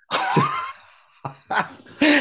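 Men laughing over a video call: a breathy burst of laughter, a brief lull, then more short bursts of laughter.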